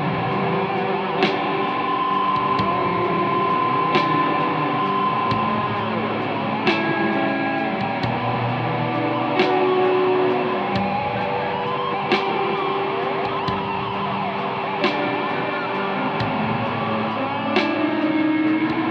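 Electric guitar played through a Marshall amplifier stack, with held lead notes and bends and an effects-unit echo. A short sharp click recurs evenly about every two and a half seconds under the playing.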